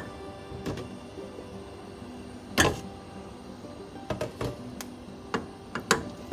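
A wooden spoon stirring chunks of carrot and potato in a stainless steel pot, knocking against the metal several times, the loudest knock a little before halfway. Soft background music plays steadily underneath.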